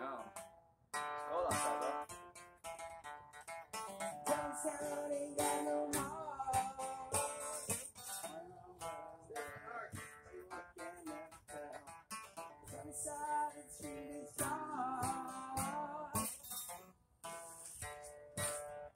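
Acoustic guitar being played solo, with melodic single-note runs mixed with chords and a brief pause just under a second in.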